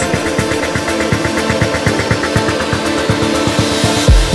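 Electronic dance music from a DJ mix: a steady run of quick, even percussion hits over held synth tones, without a deep bass drum.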